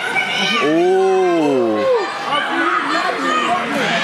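A long, wordless yell lasting about a second, rising then falling in pitch, over the steady chatter of a crowd in a hall.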